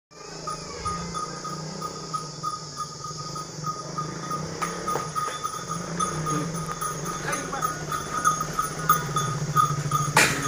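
Motorcycle engine running at low speed, growing louder near the end as it comes close, with a high note repeating throughout and a few sharp clicks.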